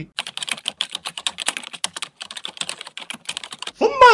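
Rapid typing on a computer keyboard: quick runs of keystrokes with a couple of brief pauses, stopping shortly before the end.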